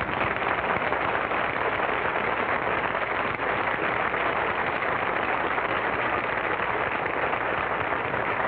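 Studio audience applauding steadily: the dense, even clatter of many hands clapping at once.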